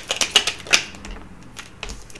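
A deck of tarot cards being shuffled by hand: a quick run of crisp card clicks that thins out to a few scattered ones after about a second.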